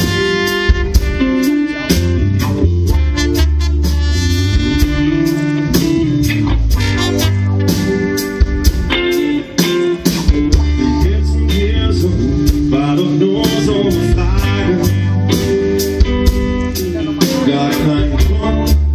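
A live rock/blues band playing: drum kit keeping a steady beat under electric guitar and bass, with a horn playing held melody notes.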